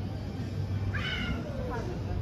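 Busy pedestrian street with a steady low rumble. About a second in, a short high-pitched call rises briefly and then falls in pitch.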